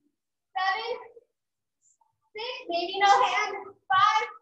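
A woman's voice in two short bursts, about half a second in and from about two and a half seconds, with the words not made out; the sound drops to dead silence between them.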